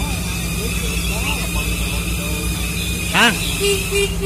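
Kubota compact tractor's small three-cylinder diesel engine idling steadily shortly after starting.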